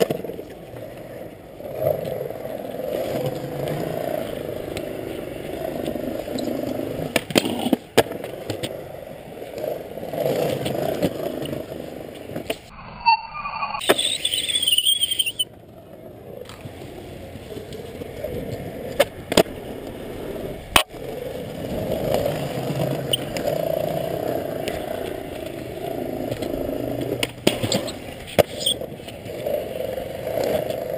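Skateboard wheels rolling over concrete, the rumble swelling and fading as the boards speed up and slow down, with several sharp clacks of boards hitting the ground. About halfway there is a brief high squeal.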